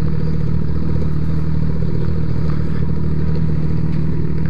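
Motorcycle engine running steadily at low speed, heard from the rider's seat: an even, low engine note that neither rises nor falls.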